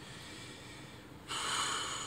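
A man breathes out hard through his nose, a short noisy rush of air starting about a second in and lasting about a second.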